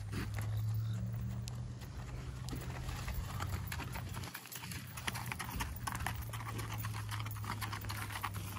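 A molly mule's hooves stepping on sandy gravel, a run of faint scattered clicks, over a steady low hum in the background.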